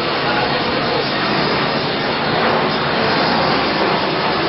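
Steady, loud rushing noise.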